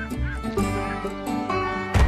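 Gulls calling in short, hooked cries over slow instrumental music with long held notes.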